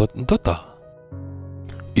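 Story narration with soft background music: the voice trails off in the first moment, and after a brief pause a steady sustained chord comes in about halfway through.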